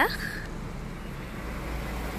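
Steady low rumble of road traffic in the background, with no distinct passing or horn.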